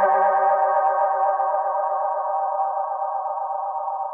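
Behringer Model D analog synthesizer holding a sustained tone through a Space Echo–style tape delay (EchoBoy), slowly fading. A low bass note drops out about a second in.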